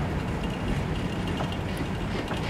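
Freight cars rolling slowly past on the track while being shoved in reverse, with the locomotives far off: a steady low rumble with a faint brief squeak about one and a half seconds in.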